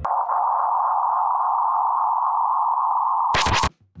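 Steady electronic tone, like a test-tone beep, held unbroken for about three and a half seconds. It ends in a short crackle of static and cuts off suddenly.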